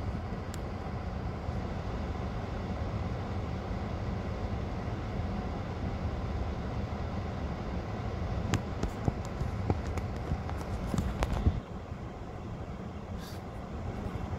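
Steady low rumble of a stationary car's idling engine and running, heard from inside the cabin, with a few light clicks. The rumble drops a little about two-thirds of the way in.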